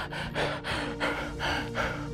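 A man sobbing in rapid gasping breaths, about four a second, over background music with steady held notes.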